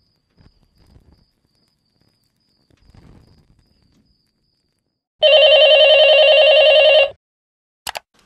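A loud ringing sound effect with a fast flutter starts about five seconds in, lasts about two seconds and cuts off sharply. A sharp click follows just before the end. Faint low rustling comes earlier.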